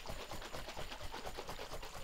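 A sealed bottle of brandy and chocolate syrup being shaken hard, the liquid sloshing inside in quick, irregular strokes.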